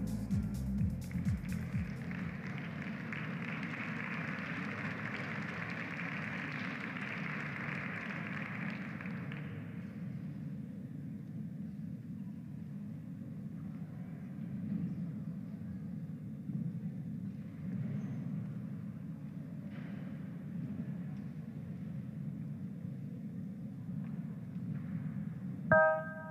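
Quiet arena ambience: a steady low hum, with a soft hiss over the first several seconds. Near the end the music for a ribbon routine starts.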